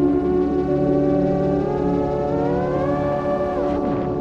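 Brushless motors of a Rekon6 FPV quadcopter whining in several tones at once. The pitch climbs over a couple of seconds as the throttle goes up, then falls sharply just before the quad flips upside down.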